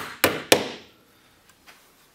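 Three quick hammer strikes driving nails into the wooden frames of Langstroth beehive frames in the first half second.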